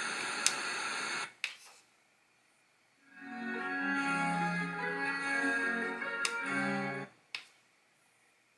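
Music from an FM radio station playing through the Cuboid camping speaker, cutting out to silence for about a second near the start and again near the end, with a few short clicks.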